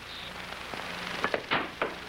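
A few sharp clicks about halfway through, typical of a pool cue striking and billiard balls knocking together as a trick shot is played. They sit over the steady hiss and low hum of an old film soundtrack.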